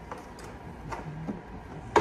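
A few light clicks and knocks as a chest panel is handled and pressed into place on the frame of a power-armour suit, ending in a sharper knock.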